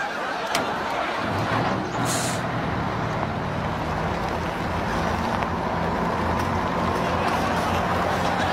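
Tractor-trailer's diesel engine running as the rig pulls away, swelling up about a second in and growing slowly louder, with a short hiss of air brakes about two seconds in.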